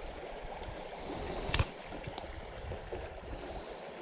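Small creek's water flowing steadily over a shallow riffle, with a single sharp click about a second and a half in.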